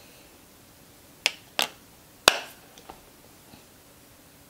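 Three sharp clicks within about a second, followed by a fainter fourth.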